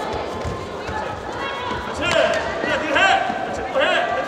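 Taekwondo sparring bout: footfalls and thuds of the fighters on the foam mat, with short sharp shouts repeating about every half second in the second half.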